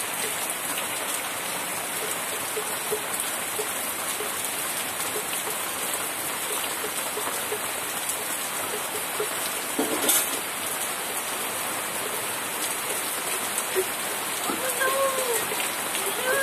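Heavy rain pouring steadily onto trees, leaves and wet ground, with runoff streaming off the roof eaves. A single sharp knock about ten seconds in.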